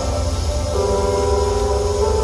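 Live harsh-noise electronics from patched effects pedals and a mixer: a heavy, steady low rumble with held drone tones over it, a stronger mid tone coming in just under a second in.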